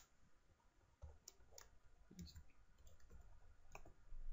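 Near silence with a few faint, scattered computer mouse clicks at the desk while the screen recording is being brought to a stop.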